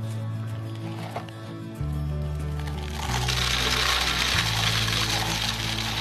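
Background music with sustained low notes. About three seconds in, small pebbles start pouring into a glass jar of golf balls: a steady rush of stones that runs on under the music.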